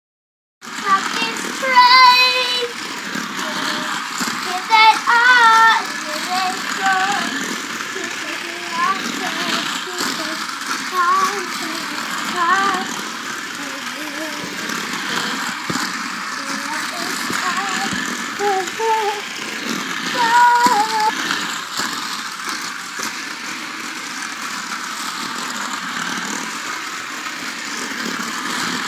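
A young child's high-pitched voice, wavering calls and babble without clear words, over a steady whir from a battery-powered light-up toy car running along its track.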